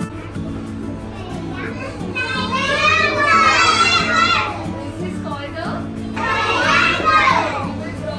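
A class of young children calling out together in a loud, high chorus, twice, over soft background music.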